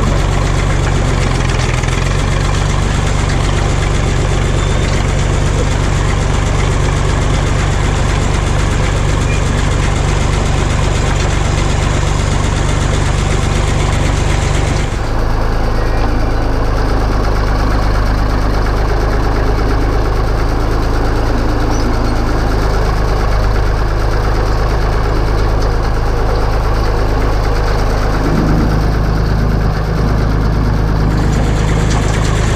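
Tractor engine running steadily under light load while towing a bale loader across a hayfield. About halfway through the engine note shifts to a different, steady tone.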